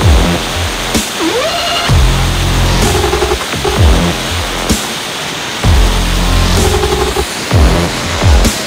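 Background electronic music with a heavy bass that drops out and comes back every couple of seconds, repeating synth notes and sweeping pitch glides.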